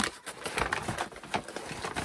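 Brown paper shopping bag crinkling and rustling as a hand rummages inside it, with irregular sharp crackles.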